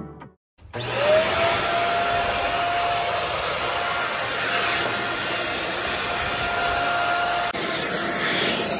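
An electric motor-driven appliance switching on: its whine glides quickly up to a steady pitch and then runs over a loud, even rush of air.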